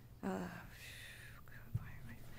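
Sheets of paper rustling as a stack of documents is leafed through at a podium microphone, with a soft bump against the podium or mic near the end, after a brief spoken "uh".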